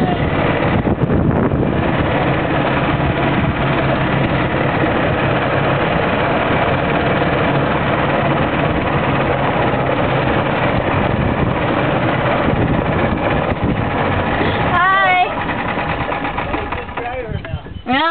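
Golf cart driving over grass: its motor runs steadily under a loud rush of noise. The noise eases off about fifteen seconds in, after a short wavering vocal sound.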